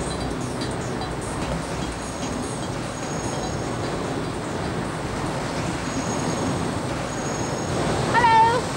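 Steady, dense machinery noise from large steam-driven water pumping engines running.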